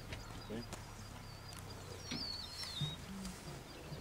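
A bird singing: short whistled, warbling phrases that swoop quickly up and down, repeated several times, the longest run about two seconds in.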